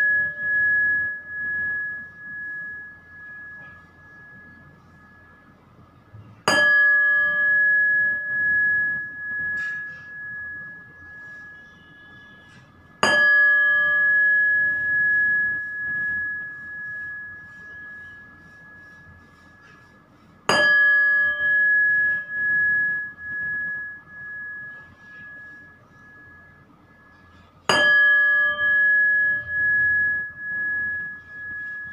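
A metal bell struck four times, about seven seconds apart, each strike ringing on in a clear tone that pulses as it slowly dies away; the ring of an earlier strike fades out at the start.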